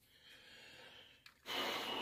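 A short intake of breath, about half a second long, about a second and a half in, after a near-silent stretch.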